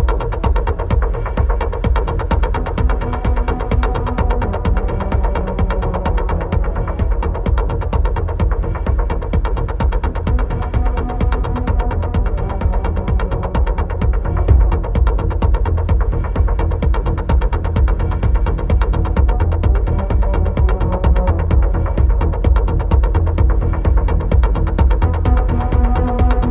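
Dark, hypnotic techno: a steady four-on-the-floor kick and heavy bass pulse under sustained droning synth tones and an even run of percussion ticks.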